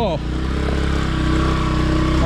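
A small motor scooter engine running with a steady low hum.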